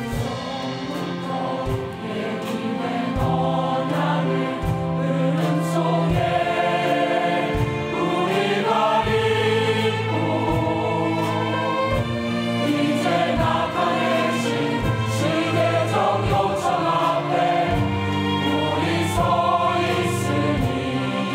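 Mixed church choir singing a hymn in full harmony, accompanied by violins, over a low bass note that recurs about every second and a half.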